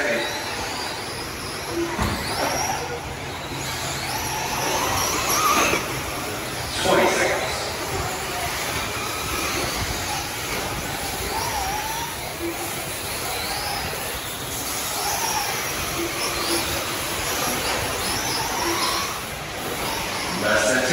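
Electric 1/8-scale RC truggies racing on a dirt track: the motors whine briefly up and down in pitch as they accelerate and brake, over a steady background of tyre and track noise, with a louder knock about seven seconds in.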